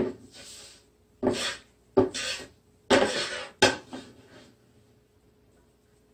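Wooden spatulas scraping and tossing pan-roasted winged spindle tree leaves: about five short bursts of dry rustling and scraping, with a sharp wooden knock at the start and another about three and a half seconds in. This is the handling of the leaves during the first roasting stage of making the tea.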